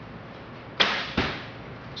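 A longbow being shot: a sharp snap as the string is released, then less than half a second later a duller thud as the arrow strikes the target.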